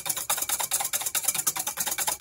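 Wire whisk beating egg whites in a stainless steel bowl: a rapid, even run of metallic clicks and scrapes, about ten strokes a second, as air is whipped into the whites.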